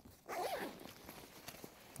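Zipper on a Vertx Gamut 2.0 backpack's side compartment being pulled open: a faint, short rasp about half a second in, its pitch rising and falling with the pull.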